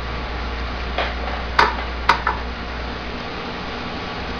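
A few short, sharp metallic clicks as a handheld tool and wire tap against the metal pins of a glass tube stem, over a steady low hum that drops away about three seconds in.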